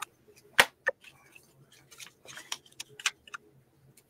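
Crafting supplies being handled on a table: a sharp click about half a second in, a second lighter click just after, then scattered faint taps and paper rustles.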